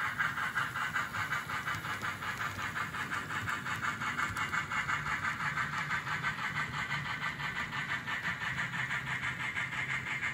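N scale model freight train running along the track: a steady rattle of small metal wheels on rail with a rapid, even clicking, over a low motor hum.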